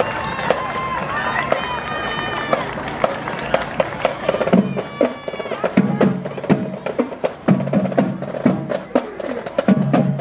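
Marching band playing: woodwinds and brass carry a sustained melody. About halfway through the horns drop out and the drumline takes over with a cadence of drum strikes and sharp clicks.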